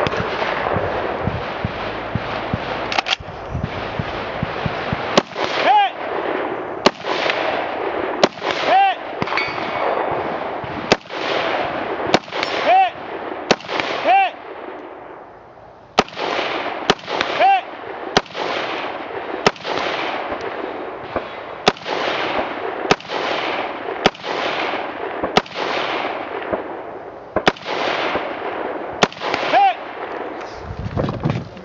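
Scoped semi-automatic rifle fired at a steady pace, about a shot a second, many shots followed by the short ring of a steel target being hit. The firing starts a few seconds in and has one brief pause midway.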